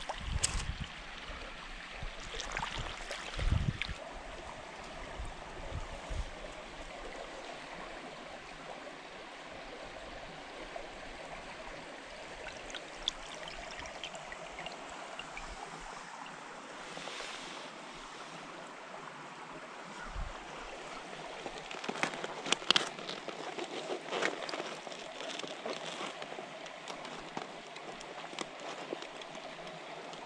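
Shallow creek water running and trickling steadily, with a short splash a few seconds in and several more about three-quarters of the way through.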